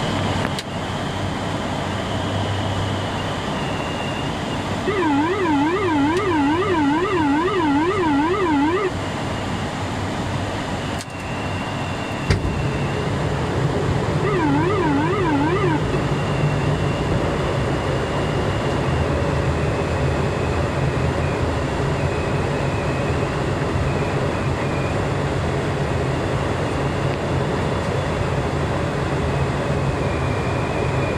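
Steady drone of the ATR 72-600's turboprop engines and propellers heard inside the cockpit. A warbling electronic cockpit alert sounds for about four seconds starting about five seconds in, and again for about two seconds near the middle, and the low drone grows louder about twelve seconds in.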